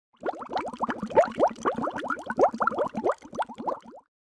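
Bubbling water: a rapid, irregular stream of bubble plops, each a quick rising blip, starting just after the opening and cutting off suddenly at the end.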